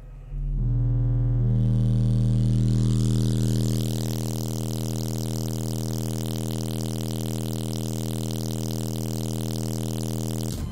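Timpano TPT-3500 12-inch car subwoofers playing a steady bass test tone under heavy power, driven to roughly 1,900–2,800 watts. The sound is distorted, with a buzzing haze over the low tone. It starts about a third of a second in and eases slightly about four seconds in.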